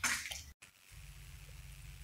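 Quiet background hum: after a brief total dropout at an edit cut, a faint, steady low hum of room tone.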